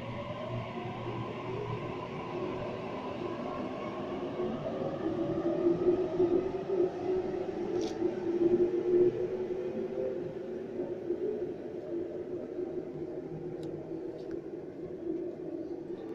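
Sydney Trains A-set Waratah electric train pulling out of the platform. Its traction motors whine, rising in pitch over the first few seconds as it picks up speed. The sound is loudest as the train passes, then fades.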